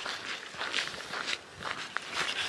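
A hiker's footsteps along a trail, a step roughly every half second.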